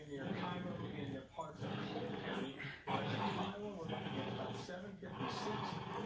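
Small dogs growling as they play tug of war over a toy, heard under continuous talk.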